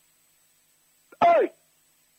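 Silence, then a little over a second in, one short vocal sound from a man, falling in pitch and lasting under half a second, like a brief throat clearing.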